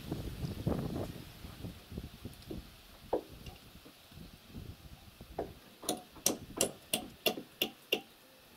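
Hammer tapping a nail over into a hook under the eave: a couple of single taps, then a quick run of about seven sharp strikes near the end.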